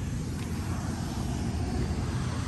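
Steady low rumble of a distant engine.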